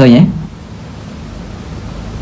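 A man's voice ending a word in the first moment, then a pause filled only by steady background hiss.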